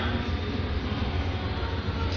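Steady low background rumble, with no distinct knocks or thuds.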